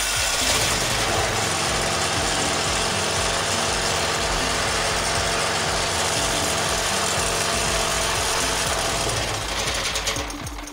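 Sumec Firman SPG3000E2 petrol generator's engine running steadily just after catching on its electric key start, the key starter working again on a new battery.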